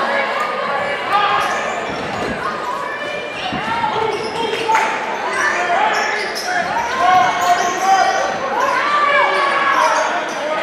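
Basketball dribbled on a hardwood gym floor, a few bounces, over many voices and shouts from players, coaches and spectators in a large gym.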